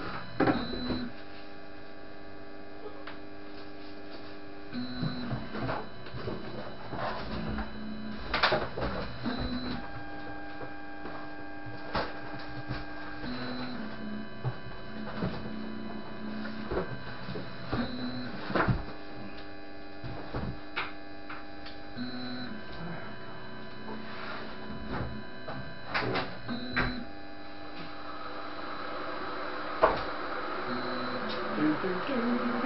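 Anet ET4+ 3D printer running, its stepper motors whining as the print head moves, the tone jumping to a new pitch every second or few over a steady hum. Occasional sharp clicks and knocks stand out above it.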